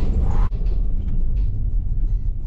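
Low, steady engine and road rumble inside a car's cabin, with a brief higher hiss at the very start.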